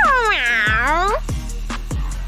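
A single cat meow, a little over a second long, falling in pitch and then rising again, over background music.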